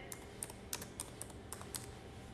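Faint typing: about seven light, irregular clicks over two seconds.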